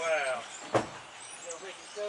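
A person's voice trails off at the start, then a single sharp click about three-quarters of a second in.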